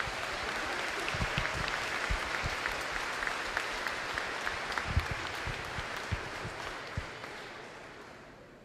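Audience applauding, a steady patter of many hands that dies away over the last couple of seconds.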